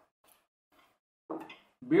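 Mostly quiet room tone with a couple of faint soft sounds, then a man's voice about a second and a half in, going into speech near the end.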